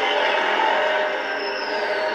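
Cartoon energy-beam sound effect, a steady dense hum with a high whine that falls in pitch near the end, heard through a television speaker.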